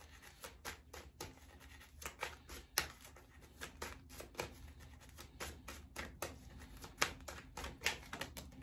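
A tarot deck shuffled in the hands: a run of soft, irregular card clicks and taps, a few a second, with a sharper snap about three seconds in and another near the end.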